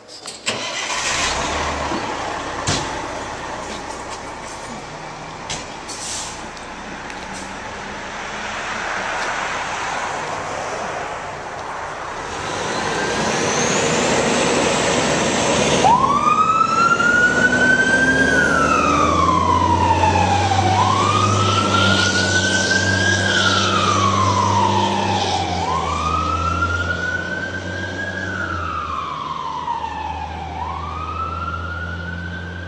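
Fire engine's diesel engine running and pulling away, then its siren coming on about halfway through: each wail winds up quickly and slides slowly back down, repeating about every four to five seconds.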